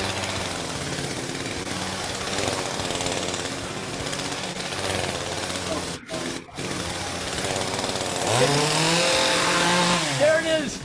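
Gasoline chainsaw running steadily while it is juggled. The sound drops out twice, very briefly, about six seconds in, and a voice rises in pitch over it near the end.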